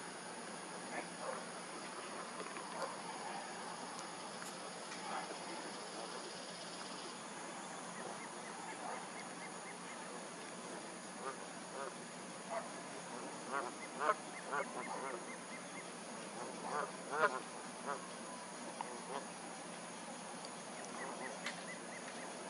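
Faint waterfowl honking calls from a pond, short and scattered, few at first and coming more often in the second half.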